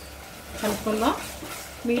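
Chopped onions and green chillies frying in oil in an earthenware clay pot, stirred with a wooden spatula that scrapes the pot.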